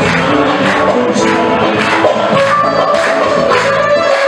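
Live music from a small ensemble with cello, a male singer at the microphone over it, and a steady percussive beat about twice a second.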